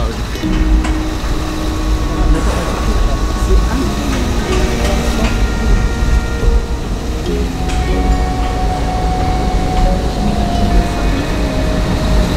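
Steady low rumble of a ferry's enclosed car deck, heard from inside a car moving slowly in the queue of vehicles.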